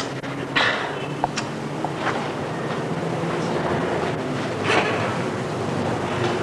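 Steady background hiss and room noise with a faint hum, broken by a few short faint knocks or rustles.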